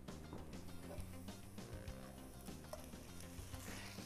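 Soft background music, with faint, irregular light clicks of drained rice grains being poured into the pot.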